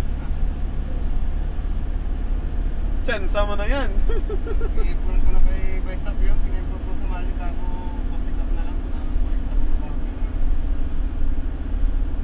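Steady low rumble of a minibus riding along, engine and road noise heard from inside the passenger cabin, with a short spell of voices about three to four seconds in.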